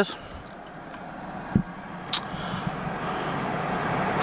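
Steady low hum and hiss inside a parked car's cabin that slowly grows louder, with a soft thump about one and a half seconds in and a short click shortly after.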